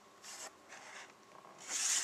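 Hands rubbing and scraping against a cardboard-backed plastic blister package of an action figure as it is handled, in short scuffs with a louder scrape near the end.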